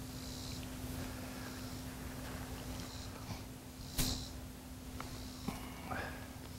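Quiet lakeside background: a faint steady low hum under a low rumble, with a single short knock about four seconds in.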